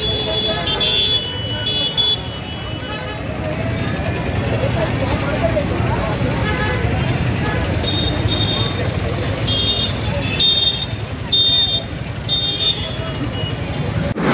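Crowd of people talking in a busy street over a steady traffic rumble; in the second half a high-pitched vehicle horn toots about six times in short honks.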